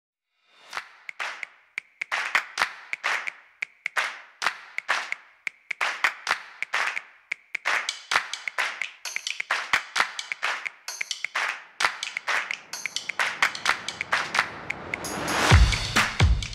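Upbeat intro music driven by a rhythmic handclap-style percussion beat, about three strokes a second, swelling in a rising sweep near the end into a deep bass hit.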